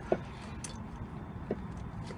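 Steady low background hum in a pause between words, with two brief faint voice sounds, one at the start and one about a second and a half in.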